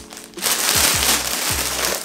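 Clear plastic clothing bag crinkling as it is handled, starting about half a second in, over background music with a steady low beat.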